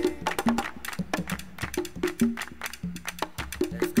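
Latin percussion break in a rumba-style jazz track: drums and sharp clicking strokes play a busy rhythm with short low drum notes, the held chords having dropped out. Singing comes back in right at the end.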